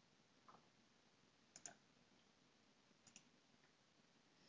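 Near silence broken by three faint computer-mouse clicks, spaced about a second or so apart.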